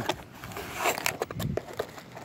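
Handling noise from a speaker box and its packaging being moved about: scattered clicks and light knocks with some rustling, and a dull thump about one and a half seconds in.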